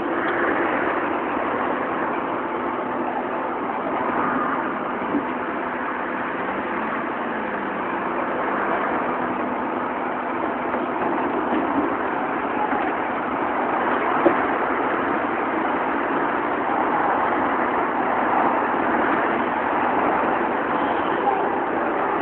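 An Ikarus 415T electric trolleybus standing at a stop and then pulling away, heard against steady city traffic noise.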